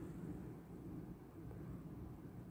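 Faint room tone with a low steady hum and no distinct sound events.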